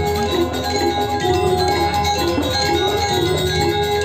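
Balinese gamelan playing: bronze metallophones and gongs ringing in a continuous, repeating pattern of short struck notes.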